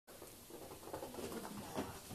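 Soft, irregular patter and scuffling, with a slightly louder rustle near the end.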